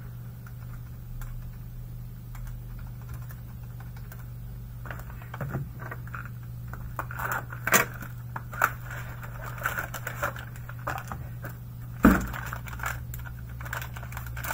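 Hands handling shrink-wrapped trading-card boxes on a table: scattered light clicks, taps and wrapper rustle from about five seconds in, with one louder knock near the end. A steady low hum runs underneath.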